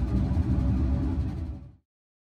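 Steady low background rumble with no speech over it, cutting off abruptly to silence near the end.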